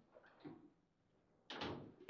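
Knocks from play on a table football table: a couple of faint taps, then one sharp knock about one and a half seconds in that rings briefly in the table.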